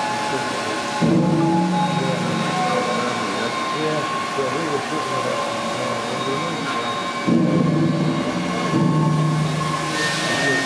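The River Don Engine, a 12,000 hp three-cylinder steam engine, running. Its low drone swells in suddenly about a second in and twice more near the end, over steady high tones.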